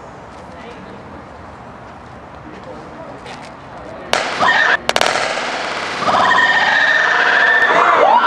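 Metallic sodium exploding in a bowl of water: about four seconds in, a sudden loud burst with a couple of sharp cracks a moment later, as the reaction with water ignites its hydrogen. It is followed by loud, sustained shouting and screaming from a group of onlookers.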